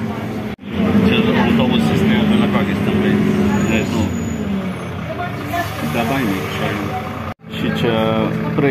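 Running noise inside a moving city bus: a steady engine and road drone, with people's voices talking over it. The sound cuts out abruptly twice, about half a second in and near the end.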